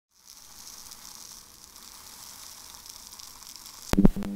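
A steady, faint crackling hiss, like static, then a sudden loud hit just before the end as an intro sound effect starts.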